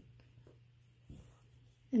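Faint rustle of macrame cord being handled and held against a wooden dowel, over a low steady hum.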